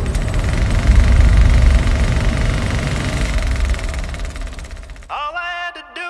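Vehicle engine running with a deep rumble, swelling about a second in and then fading away, at the start of a country song. About five seconds in, a male voice starts singing.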